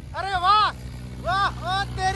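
Mahindra 585 DI XP Plus tractor's diesel engine running steadily under load as it climbs a sand dune, with two short, excited shouts from a man over it.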